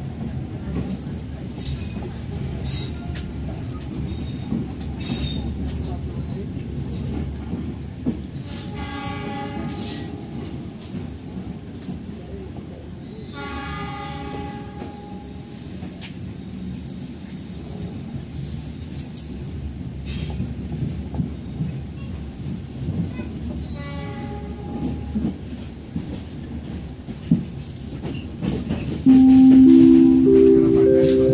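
Steady low rumble inside a moving passenger train carriage, with three separate train horn blasts of one to two seconds each spread through. Near the end a rising chime from the onboard public-address system begins.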